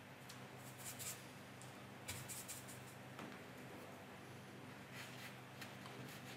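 Faint scratchy swishes of a watercolour brush working paint in the palette and stroking it onto the paper, in a few short bursts.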